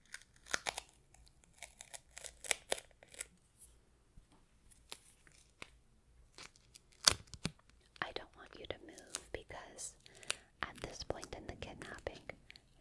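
Adhesive tape being pulled off the roll and torn, in a string of short sharp rips and clicks. The loudest rip comes about seven seconds in, followed by longer stretches of peeling near the end.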